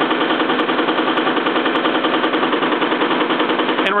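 A home-built Bedini-style motor-and-alternator rig running steadily, with the test motor spinning at about 2100 rpm while powered from the alternator through the transfer switch. The sound is a loud, even mechanical hum with a fast, regular rattle in it.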